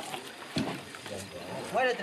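Men's voices calling out in a local language. A single sharp knock comes about half a second in, and loud speech starts near the end.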